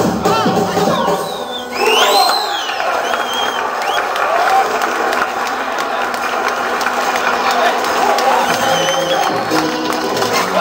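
Audience cheering and shouting over backing music. About two seconds in there is a loud, high call that rises and falls, and a few short high calls follow later.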